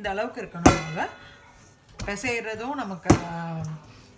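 A high voice with no clear words, broken by two sharp knocks: one under a second in, the other near the end.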